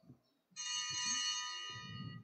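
A small bell struck once about half a second in, ringing with several steady high tones that fade over about a second and a half: the sacristy bell signalling the start of Mass.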